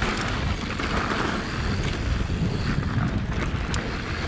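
Wind rushing over the microphone and a mountain bike's knobby tyres rolling over a loose gravel dirt trail at speed, as a steady rumbling noise with a few light clicks and rattles from the bike.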